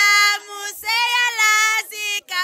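A high voice singing long held notes, with a short break a little under a second in.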